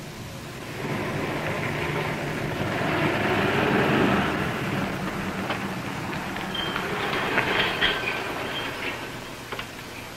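A motor vehicle passing: engine and road noise swell over a few seconds and then fade away, with a few faint squeaks as it dies down.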